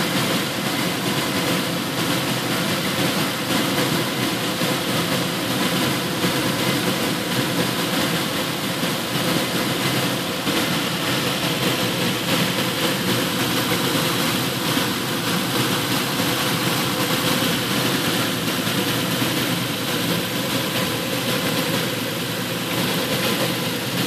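Nissan V6 engine idling steadily while it warms up, so the thermostat opens and trapped air bleeds out of the cooling system.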